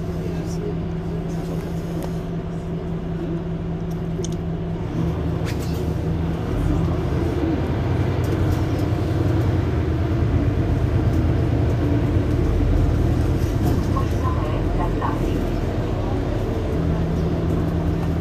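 Mercedes-Benz Citaro C2 Hybrid city bus running while stationary at a stop: a steady engine hum, which gives way about five seconds in to a deeper, louder rumble lasting about twelve seconds before the steady hum returns near the end.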